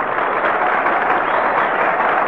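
Studio audience applauding steadily and densely, heard on an old radio broadcast recording.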